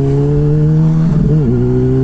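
Sportbike engine running at steady revs while riding, with wind rumble on the helmet microphone. About one and a half seconds in, the engine note briefly dips and then returns to the same pitch.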